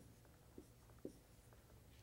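Near silence with a couple of faint, short taps of chalk writing on a blackboard.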